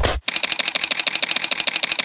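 News-channel logo sting sound effect: one short hit, then a fast, even run of sharp mechanical clicks at about a dozen a second, like a camera shutter firing in bursts.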